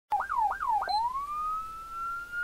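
Electronic siren: three quick up-and-down whoops in the first second, then one long, slowly rising wail.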